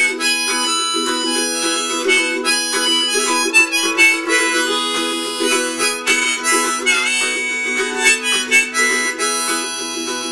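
Harmonica played in a neck rack, a melody of held notes, over strummed ukulele chords: the instrumental break between sung verses of a folk-blues song.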